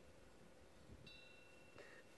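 Near silence, with a faint high ring of a small temple wind bell about a second in that fades out within a second.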